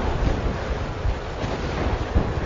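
A steady rushing noise, like wind, with a deep rumble underneath; no tune or speech stands out.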